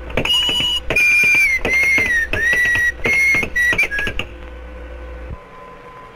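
A quick tune of high, whistle-like notes: about eight held notes, some gliding slightly down or up, with sharp clicks between them. It stops about four seconds in, leaving a faint steady hum.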